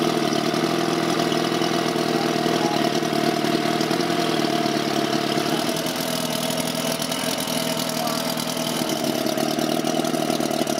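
Motorboat engine idling steadily, dipping slightly in level about six seconds in.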